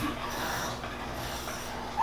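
Quiet brushing of a Furminator deshedding tool drawn through a short-haired dog's coat, its metal edge pulling out loose undercoat.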